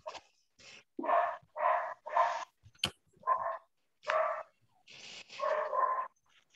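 Excited dogs barking, a series of about eight short barks with brief gaps between them.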